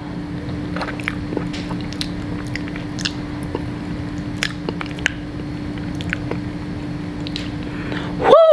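Close-miked chewing of a spoonful of eggplant dip: wet mouth clicks and squishes scattered throughout, over a steady low hum.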